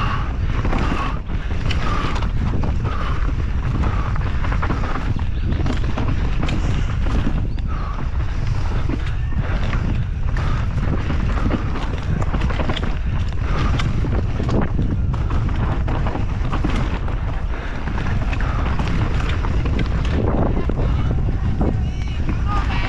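Enduro mountain bike ridden fast down a rough forest trail. Constant wind buffets the microphone, tyres rumble over dirt, and the bike rattles with frequent sharp knocks as it hits roots and rocks.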